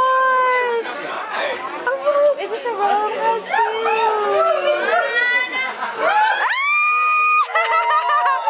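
Several people talking and exclaiming over one another, with a high voice holding one long note for about a second, about six and a half seconds in.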